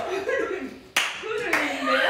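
Two sharp hand claps about half a second apart, the first the louder, amid women's laughter and talk.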